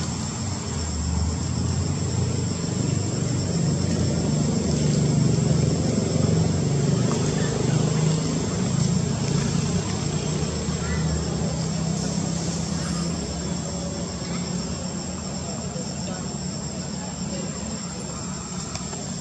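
A low, steady rumble like a distant engine, swelling over the first several seconds and slowly fading, with a thin high steady whine above it.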